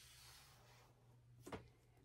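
Near silence, with a faint rubbing of a felt-tip marker tracing along paper in the first half and a brief faint click about a second and a half in.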